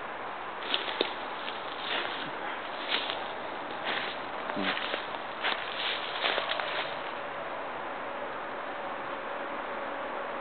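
Footsteps crunching through dry leaf litter, several steps roughly a second apart that stop about seven seconds in. A faint steady tone runs underneath.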